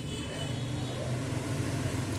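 A steady low engine-like hum under a background noise haze, with no distinct clicks or knocks.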